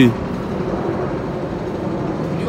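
Steady outdoor city background noise with distant road traffic.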